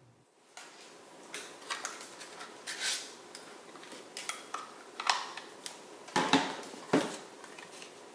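Handheld craft paper punch and cardstock being handled on a cutting mat: scattered light clicks and clacks, with a few sharper clacks in the second half.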